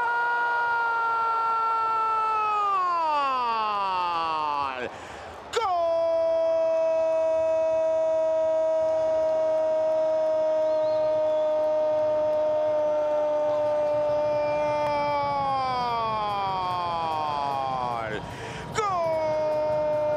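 Spanish-language football commentator's long drawn-out shouted "gol" call. A held shouted note slides down in pitch, and after a quick breath about five seconds in a second call is held for about ten seconds before sliding down. A third call begins near the end.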